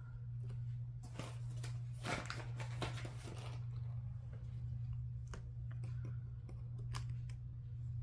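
Hands rubbing and peeling vinyl sticker paper on a planner page: papery rustling for a couple of seconds about a second in, then a few light ticks, over a steady low hum.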